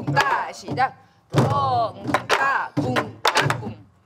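Several sori-buk, the Korean pansori barrel drums, struck together in a jangdan rhythm: sharp stick raps on the wooden shell and deeper palm strokes on the hide head. A voice chants or sings over the strokes, with a brief pause about a second in.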